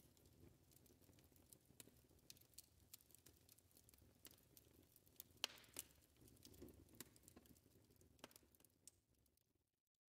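Near silence, with a few faint scattered clicks.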